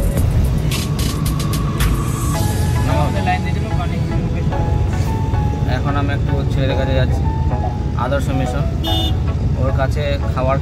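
Steady low rumble of a car's engine and tyres heard from inside the cabin while driving, with music carrying a singing voice playing over it.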